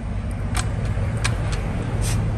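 A steady low rumble, with a couple of sharp metallic clicks as the casing and lever of a removed Honda 110 motorcycle engine are handled.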